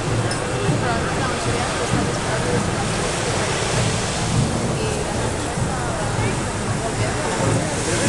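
Busy city street ambience: a steady wash of car traffic driving through an intersection, with the murmur of crowds talking on the pavements.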